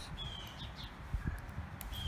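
A bird chirping twice, short high calls a little under two seconds apart, over a low outdoor rumble, with a faint click or two from the metal suspender hook late on.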